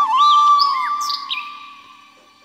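Flute intro tune ending on one long held note that fades away, with a few short bird chirps over it in the first second or so.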